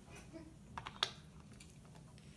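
A few light clicks of plastic Lego pieces being handled, the sharpest about a second in.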